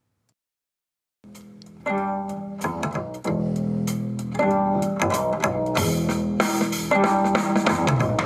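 Multitrack song of bass, guitar and drums playing back from a DAW, starting after about a second of silence. The bass, hi-hat and cymbals fade in over the first few seconds under drawn volume automation.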